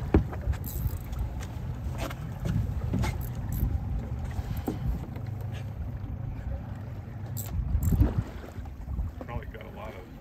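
Steady low rumble of wind and water around a small flats skiff, broken by a few sharp knocks from the boat or tackle. The loudest knock comes just as the sound begins, another near the end.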